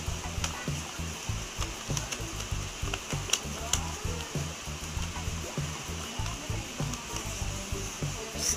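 A sheet of paper rustling and crinkling as it is handled and folded, with a couple of sharp crackles a little past the middle, over background music.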